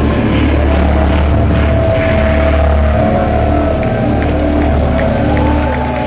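Live band music through a club PA: a held synth chord over a deep droning bass as the song reaches its close, with the audience starting to cheer and whoop near the end.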